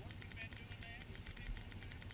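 Honda four-wheeler (ATV) engines idling steadily at low revs.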